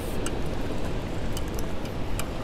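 Steady low rumble of wind and rushing river water around a fishing boat, with a few faint sharp clicks.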